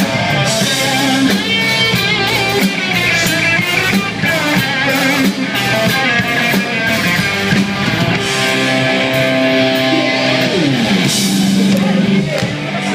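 Live rock band playing loud, with electric and acoustic guitars, a drum kit and some singing. A held note glides down in pitch near the end.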